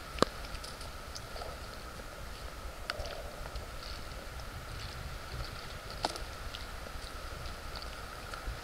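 Open-air lake ambience: a steady low wind rumble on the microphone, with three light, sharp knocks about three seconds apart.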